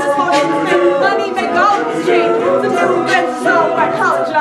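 A college a cappella group singing live: a female lead voice at the microphone over a choir of backing voices, with a vocal percussionist beatboxing a steady beat.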